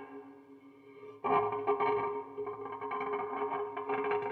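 MÄSÄ electrified brass cowbell with attached effect springs, played with chopsticks and heard through an amplifier with effects: a fading ring, then a sharp strike about a second in followed by a sustained, effects-laden ringing tone with smaller hits, slowly dying away.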